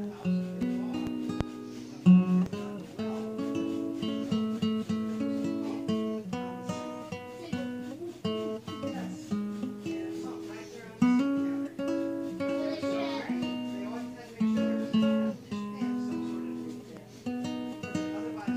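Classical acoustic guitar fingerpicked solo, an instrumental melody of plucked single notes over bass notes, each note ringing and fading.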